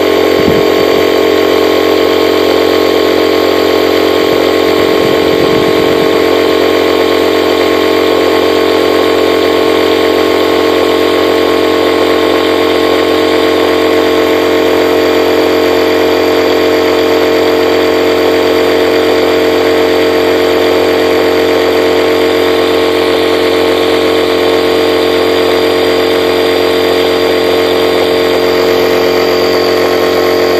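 Sevylor 12V 15 PSI high-pressure electric air pump running with a steady motor drone, inflating an inflatable kayak's drop-stitch floor toward 7 psi.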